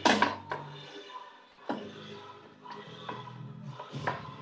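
A block of wet clay slapped down and worked by hand as it is wedged, with a sharp thump right at the start and a few lighter slaps after it. Music plays underneath.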